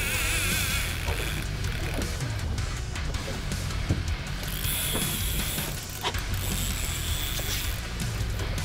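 Fishing reel drag buzzing as a hooked kingfish (king mackerel) pulls line off, in three spurts, over a steady low rumble.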